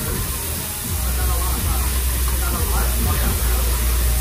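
Thinly sliced meat sizzling on a round tabletop barbecue grill as tongs spread it. Restaurant chatter and background music are mixed in, with a low rumble from about a second in.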